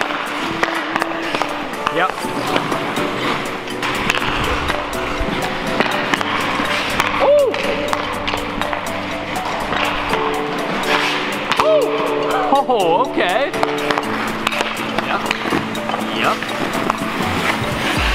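Background music with held chords and a gliding vocal line. Under it come the scrape of ice skates and the light clicks of a hockey stick handling a puck.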